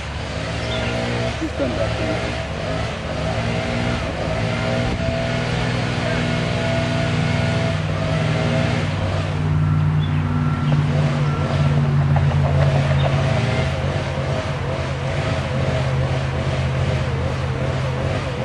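A motor engine running steadily, its pitch shifting a little now and then.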